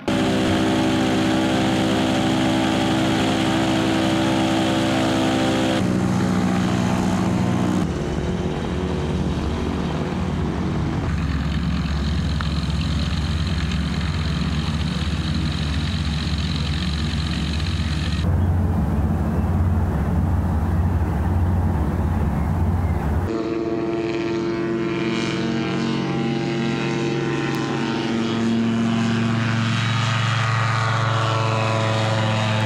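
Flexwing microlight trike's engine and propeller running steadily, the drone changing in pitch at each of several cuts. Near the end the pitch rises as the trike takes off.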